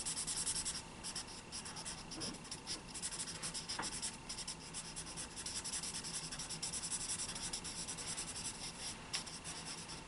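Felt-tip marker scratching across paper in many quick short strokes, inking vertical lines and filling a row of trees in solid black.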